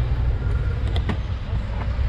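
Low rumble of wind buffeting a moving cyclist's camera microphone, mixed with street traffic, with a couple of faint clicks about a second in.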